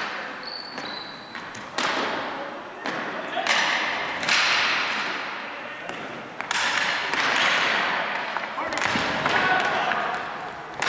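Ball hockey play in a gymnasium: sticks cracking against the plastic ball and the ball banging off the boards, a sharp hit every second or two, each ringing out in the hall's echo.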